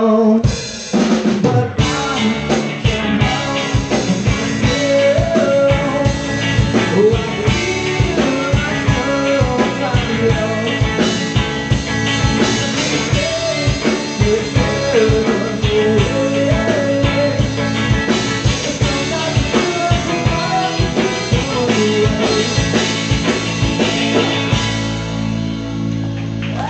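Live rock band playing an instrumental passage: a drum kit beating a steady rhythm under electric guitars. The drums come in about two seconds in, after a short drop.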